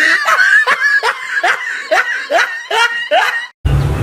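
A person laughing in a long run of short bursts, about three a second, each dropping in pitch. The laugh cuts off suddenly near the end.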